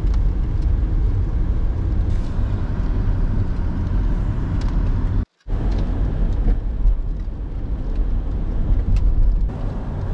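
Steady low rumble of road noise inside a Toyota Prius driving on wet, rain-soaked streets. The sound cuts out for a moment about halfway through.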